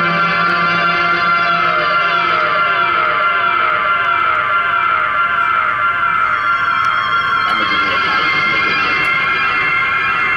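Electric guitar played through electronic effects, making a dense, sustained wash of layered tones. A steady series of falling pitch glides repeats through it, about one every second.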